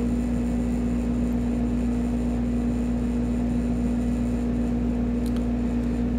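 A steady low background hum with one held tone, unchanging throughout.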